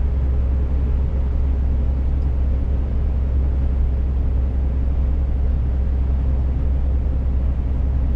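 Steady low drone of a Scania S500 truck cruising at motorway speed, heard inside the cab: engine and road noise.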